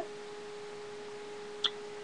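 A steady, faint, single-pitched hum, with one short click about a second and a half in.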